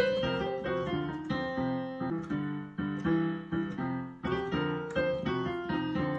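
Piano playing a blues lick on the New Orleans blues scale, with its major third and sixth. Notes and chords are struck in an even rhythm, about three a second.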